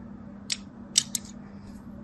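Thin blade cutting into a grid-scored bar of soap, giving three crisp clicks: one about half a second in, then two close together about a second in.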